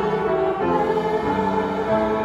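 A congregation singing a hymn in slow, held notes with piano accompaniment.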